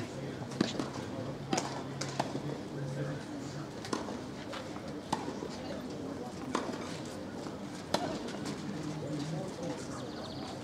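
Sharp, irregular knocks of a tennis ball on a clay court, about eight of them, over a low murmur of spectator chatter.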